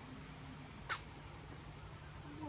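Steady high-pitched insect drone, with one short, sharp call about a second in.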